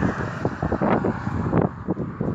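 Wind buffeting a phone's microphone, a rough rumble that swells and drops irregularly.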